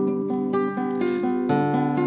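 Instrumental music between sung lines: acoustic guitar playing chords over sustained accompanying notes, changing about every half second.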